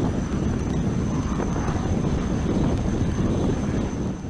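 Steady rumble of wind and ship's machinery on an open deck at sea, heaviest in the low end, with a faint thin high whine over it.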